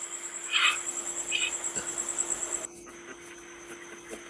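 A cricket's high, rapidly pulsing trill heard over a live-stream call's microphone. It cuts off abruptly about two-thirds of the way through, together with the background hiss.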